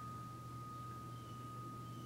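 Quiet room tone: a faint, steady high-pitched tone that holds at one pitch without fading, over a low steady hum.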